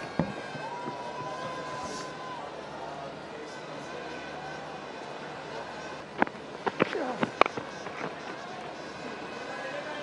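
Cricket ground ambience from the broadcast's field microphones in a near-empty stadium: a low steady background, a thin held tone about a second in, and a handful of sharp knocks about six to seven seconds in.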